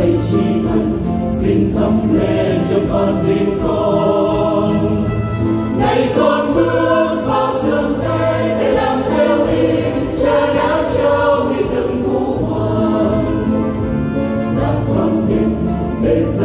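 Choir singing the refrain of a Vietnamese Catholic hymn in parts, with musical accompaniment underneath.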